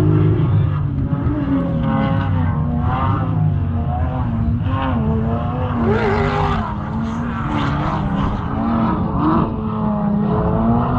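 Off-road vehicle engine revving hard under load on a sand dune, its pitch rising and falling again and again.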